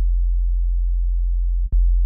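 Soloed sine-wave synth bass from a Logic Pro X "Sine Bass" track, holding one long, very low note. Near the end a brief click marks the start of the next note.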